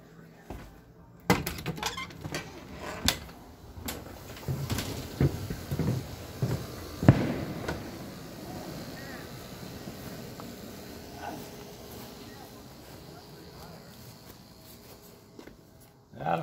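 A string of knocks and clatters, the sharpest and loudest about seven seconds in, then a steady outdoor background hiss.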